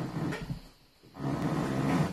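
Wooden piano bench creaking and scraping twice as someone shifts their weight on it.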